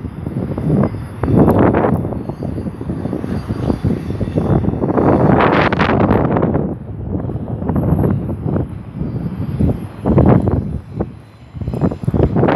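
BNSF intermodal freight train rolling past: a continuous rumble of wheels on rail that swells and eases several times as the flatcars of trailers and containers go by.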